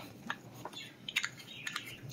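A few faint, short clicks and taps from a small plastic container, a Scentsy wax bar pack, being handled, with a pair of quick clicks near the middle and another pair near the end.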